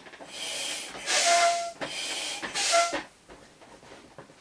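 Vinyl of an inflatable pony toy rubbed under hands: a few hissing rubbing strokes over about three seconds, with short squeaks in the two loudest.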